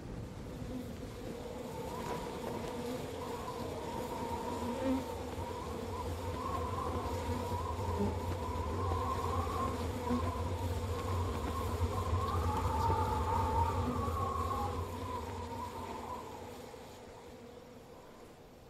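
A continuous buzz, a wavering higher tone over a steady low hum, that slowly grows louder and then fades out near the end.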